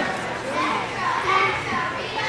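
Background chatter of many overlapping voices, children's and girls' voices among them, with no single clear speaker.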